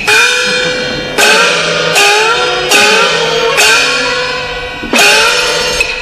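Chinese opera percussion: a gong with cymbals struck about six times, roughly once a second, each gong note ringing on and gliding upward in pitch.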